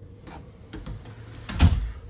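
An RV interior door being unlatched and pushed open: a few light handle and latch clicks, then a louder low thump about one and a half seconds in.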